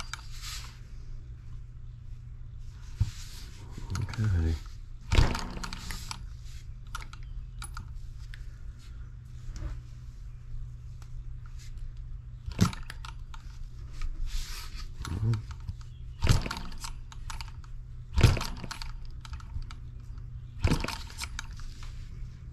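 Scattered clicks and light knocks from a small brass model engine being turned over by hand and its miniature RC carburetor being handled, over a steady low hum. The ignition is off, so the engine does not fire.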